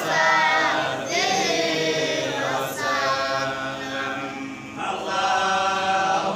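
A group of voices chanting together in unison, in phrases of one to two seconds with short breaks between them.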